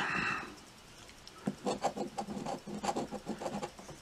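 Coin scratching the coating off a scratch-off lottery ticket in a run of quick short strokes. The strokes start about a second and a half in, after a short pause.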